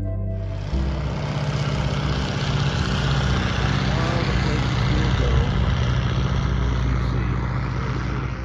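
Propeller engine of a low-flying biplane: a steady low drone under a loud rush of noise, starting just under a second in.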